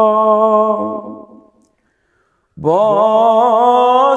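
A man's unaccompanied solo voice chanting a Dari munajat (devotional supplication): a long held note fades out about a second and a half in, and after a second of silence he comes back in with a rising, wavering melismatic line.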